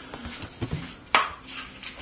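A hot glue gun being handled while beads of glue are dabbed on, giving faint taps and ticks with one sharp click about a second in.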